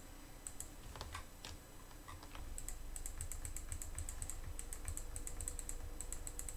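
Faint, light clicking of computer keys and mouse buttons: a few single clicks about a second in, then quick runs of several clicks a second from about halfway.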